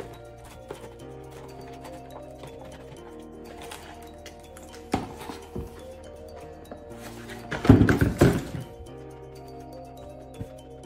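Background music over a plastic fork tapping and scraping inside a paperboard takeout box, with a few sharp clicks and a louder burst of the box being handled about eight seconds in.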